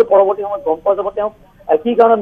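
Speech only: a voice talking, with a brief pause about a second and a half in.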